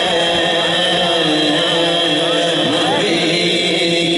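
A man singing an Urdu naat into a microphone, holding long notes that slide slowly up and down in pitch.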